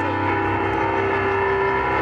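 Keyboard playing sustained chords, the notes held steady, over a constant low rumble.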